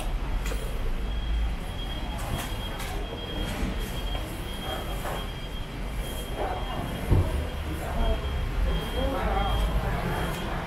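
Busy market background: a steady low rumble with people talking nearby, a faint steady high tone, and a knock about seven seconds in.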